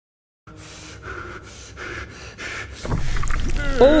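An animated cartoon character's voiced heavy breathing: quick, panting breaths, about two to three a second. It grows louder, with a low rumble swelling over the last second.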